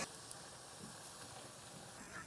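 Faint, steady hiss of kimchi cooking in a pot on the stove.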